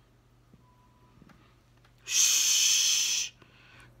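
A woman's loud, drawn-out 'shh' shushing sound, starting about two seconds in and lasting just over a second.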